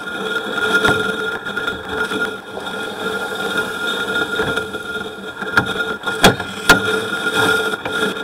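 A steady machine hum with several fixed tones, broken by a few sharp knocks, two of them loud near the end.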